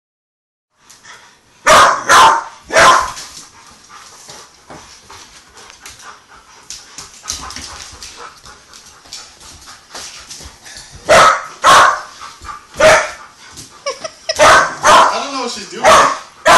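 Pit bull puppy play-barking at an older dog to get him to play: three loud barks about two seconds in, then a longer run of barks from about eleven seconds on, coming faster near the end.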